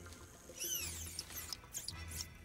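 A run of high, rising-and-falling chirps and squeaks from an eyeball-shaped Gorgonite toy creature, a film creature sound effect, starting about half a second in.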